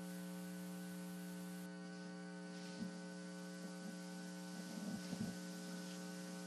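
Faint, steady electrical hum on the broadcast audio, with a few faint, indistinct sounds about three seconds in and again around five seconds.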